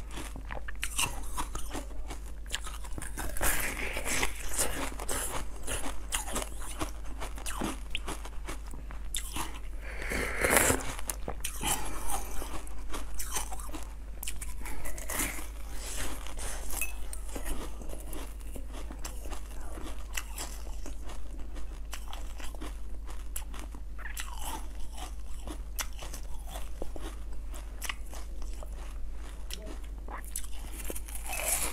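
Close-miked biting and chewing of frozen ice pieces topped with basil seeds: a steady run of sharp crunches and cracks as the ice breaks between the teeth, with the loudest bite about ten seconds in.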